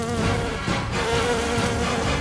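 Buzzing of a swarm of wasp-like insects taking flight, a loud steady drone.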